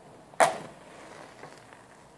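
A wooden match struck once on a matchbox's striking strip: one sharp scratch about half a second in that flares into a short fading hiss as the match lights.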